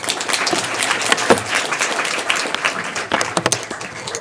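Audience applauding: many hands clapping together in a dense, irregular patter that fades near the end.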